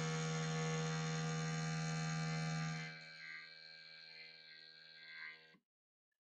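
Z-axis stepper motors of a Geeetech Prusa i3 Pro B 3D printer buzzing with a steady pitched drone as the axis drives against the frame while homing. The axis is forcing on the structure. About three seconds in, the buzz drops to a much quieter hum, and it stops shortly before the end.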